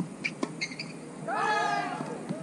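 A few sharp knocks and short chirps, then a longer pitched squeal of rubber tennis-shoe soles sliding on the hard court. The squeal rises briefly and holds for under a second near the end.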